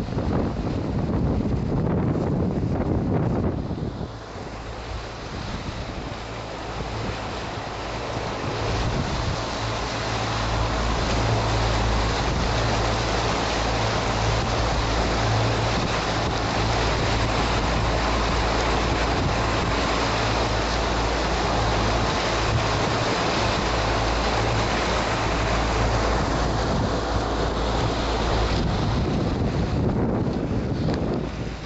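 Yamaha 115 outboard motor driving a small boat at speed: a steady engine drone under wind buffeting the microphone and the rush of water from the wake.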